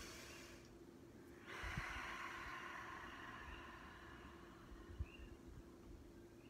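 A woman's slow, deep breath, faint: a soft breath sound in the first second, a short pause, then a longer, drawn-out breath lasting about three seconds.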